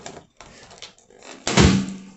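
A latex party balloon squeezed between the hands with faint rubbing, then bursting with one loud, sudden pop about one and a half seconds in.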